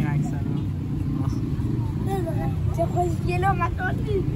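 Steady low rumble of city street traffic, with children's high voices chattering over it, mostly in the second half.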